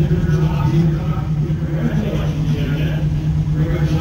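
Pure stock dirt-track race car's engine idling with the car stopped: a steady, loud drone heard from inside the cockpit.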